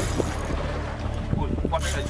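Steady low rumble of a boat at sea, with wind on the microphone. A brief voice comes in near the end.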